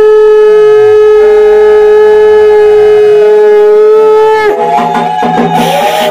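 Conch shell (shankha) blown in one long, steady, loud note in welcome at a Hindu puja, with a fainter second note gliding beneath it. The note breaks off about four and a half seconds in, and a wavering, broken sound follows.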